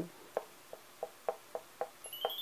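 White paint marker's tip tapping dots onto a black frame backing board to make a snow effect: six light taps, about three a second.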